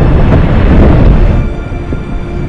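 Deep rumble of a tidewater glacier calving, ice breaking off its 400-foot face and falling into the sea. The rumble is heaviest in the first second and a half, then eases, under background music.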